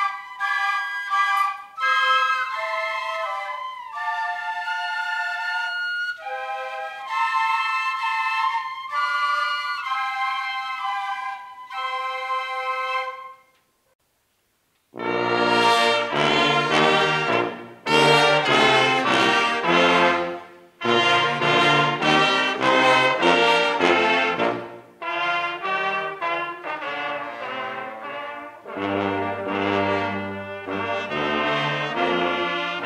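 A flute ensemble plays a melody in unison, note by note, stopping about thirteen seconds in. After a second or so of silence, a trumpet ensemble comes in with a louder, fuller tune in short phrases.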